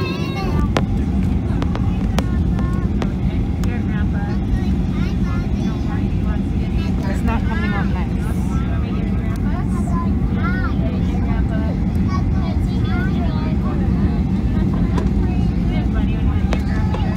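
Steady cabin noise of a jet airliner descending: a constant engine and airflow rumble, with faint passenger voices on and off.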